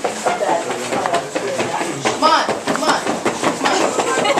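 Indistinct talk of several people at once in a busy room, with small knocks and rustles.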